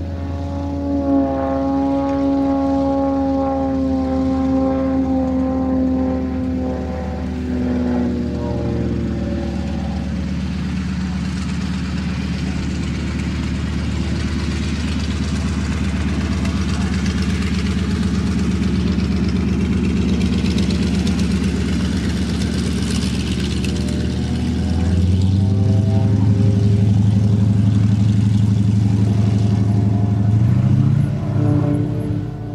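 Propeller-driven aerobatic monoplane's piston engine and propeller heard from the ground. The pitch falls gradually over the first ten seconds, then holds steady, then rises and gets louder about 25 seconds in.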